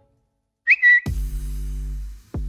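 A sharp, loud whistle blast, a short burst and then a held note, followed at once by a sudden deep bass hit that opens a music track.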